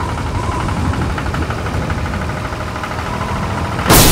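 Tractor engine running steadily with an even fast ticking, then a loud sudden bang just before the end.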